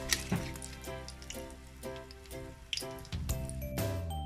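Spring rolls sizzling as they deep-fry in oil, under background music with steady sustained notes; a few sharp clicks break through the sizzle.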